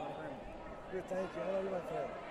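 Speech only: a voice calling out "good" over the background noise of a sports hall.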